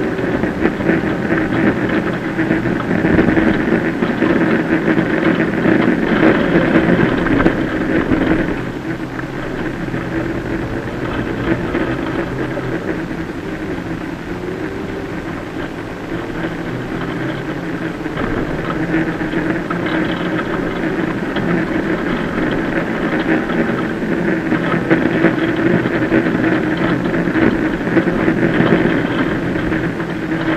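Citroën C2 VTS rally car's 1.6-litre four-cylinder engine heard from inside the stripped cabin, driven hard on a gravel stage, with a steady hiss of gravel under the car. The engine is loud under power for the first several seconds, eases off about a third of the way in, and builds again in the second half.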